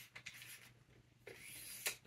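Boom-arm clamp of a microphone stand being loosened with a few light clicks, then the boom tube sliding through it with a short rubbing rasp that ends in a click.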